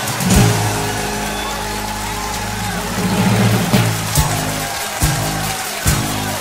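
Band music: the instrumental intro of a live praise-and-worship rock song, with sustained low chords and several sharp drum hits.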